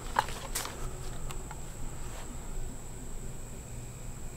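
A few light clicks and taps of a VEPR AK rifle being handled and turned over, the sharpest about half a second in, over a steady high insect drone.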